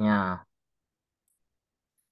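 A man's voice finishing a phrase in Indonesian about half a second in, then near silence.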